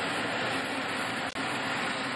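Steady, loud rushing noise of a parked jet airliner on the apron, its engines or auxiliary power unit running, with a brief drop a little over a second in.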